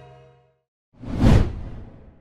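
Whoosh sound effect for a graphic transition: a swell of rushing noise that rises quickly about a second in, peaks, and tails off. Before it, a held musical chord from the logo intro fades out.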